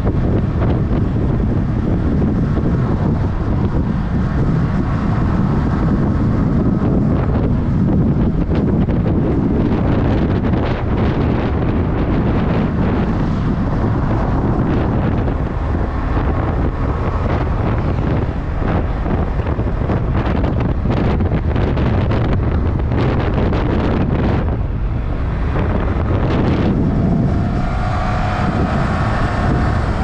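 Wind rushing over a helmet-mounted microphone on a motorcycle riding at about 40 to 60 km/h, with the bike's engine and road noise underneath. A faint pitched whine joins in near the end.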